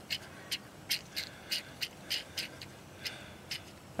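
Faint, quick clicks, about four a second, as a hand keeps pressing the primer bulb on a Troy-Bilt four-stroke string trimmer that is not really pumping fuel.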